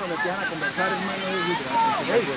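Several people's voices talking and calling over one another, with a steady hiss underneath.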